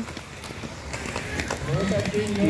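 Inline speed skates rolling and striding past on the track: a steady wheel hiss with faint, irregular clicks. A voice starts near the end.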